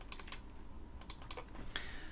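Computer keyboard typing: a few quick keystrokes at the start, then another short burst about a second in.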